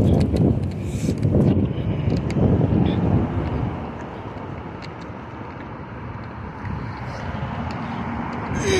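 Wind rumbling on a handheld phone's microphone while walking, gusty at first and easing off about halfway through.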